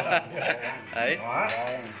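Light clinks of chopsticks against a small ceramic dipping bowl, with men's voices and a laugh near the end.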